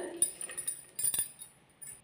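A few light metallic clicks and clinks from a hand working the thread at a sewing machine's needle, the clearest just after a second in, then quiet.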